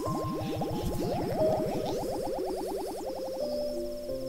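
Synthesized sound effect of rapid, repeated rising pitch glides, several a second, over sustained soundtrack tones; the glides stop near the end. A steady cricket-like chirping runs high above.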